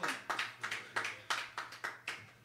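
Small audience clapping: sparse, distinct claps coming about three a second and fading off near the end.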